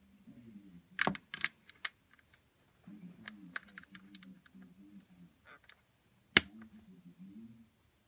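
Snap Circuits pieces being snapped into place: sharp metal snap clicks as parts and a jumper wire are pressed onto the plastic base. A quick cluster comes about a second in, two more come around three and a half seconds, and the loudest single click comes just past six seconds.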